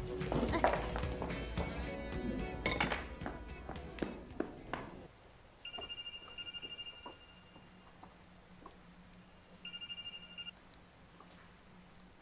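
Mobile phone ringtone ringing twice, as an electronic trill of steady high tones: first for about a second and a half, then for about a second, a few seconds apart. Before it, for the first half, music plays with sharp clicks and clatter.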